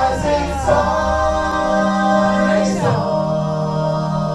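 Choral singing in a music track: several voices hold long, sustained chords, shifting to a new chord about three seconds in.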